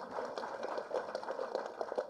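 Faint audience noise in a hall: a low murmur scattered with many small irregular clicks, with no single loud event.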